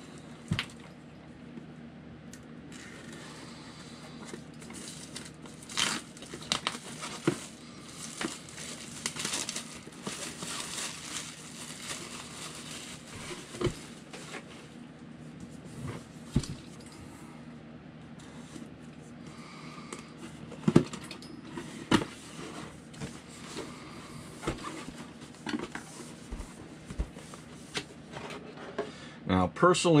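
A cardboard kit box being slit open with a hobby knife and opened by hand, with crinkling plastic parts bags and scattered sharp clicks and knocks, the loudest knock about two-thirds of the way through.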